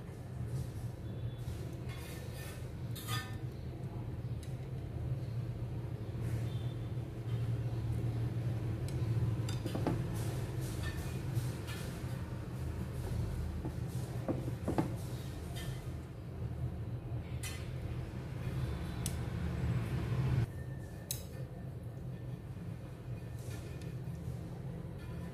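Chopsticks clicking and clinking against ceramic plate and bowl as pieces of cooked salmon head are moved into a soup bowl, in scattered light taps. Under it runs a steady low hum that cuts off suddenly about twenty seconds in.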